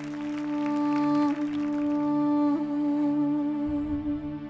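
A solo wind instrument holds one long note over a low steady drone, its pitch stepping slightly twice.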